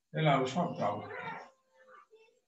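A man's voice speaking, lasting about a second and a half, then a short pause.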